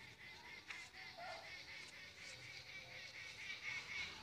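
A bird calling faintly, a quick series of short high notes repeated about three or four times a second.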